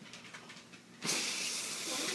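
A man blowing hard at a cake crowded with lit birthday candles: a long, steady rush of breath that starts suddenly about a second in and keeps going, only just enough to get them all out.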